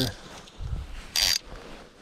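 Fly reel's click-and-pawl drag buzzing briefly about a second in as line is pulled off the spool.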